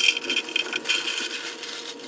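Cornflakes pouring out of a foil snack bag into a clear plastic canister: a continuous rattling patter of dry flakes landing on the plastic and on each other, with the crinkle of the foil bag. It is loudest at the start and eases a little as the canister fills.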